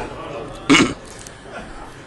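A single brief vocal sound from a man's voice, a little under a second in, over low hall room noise.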